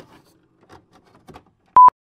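A few faint clicks, then a single short, loud electronic beep near the end that stops abruptly.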